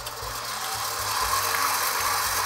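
Electric stand mixer running at medium speed, its wire whisk beating egg whites in a steel bowl: a steady motor whir with a low hum, getting a little louder as it comes up to speed.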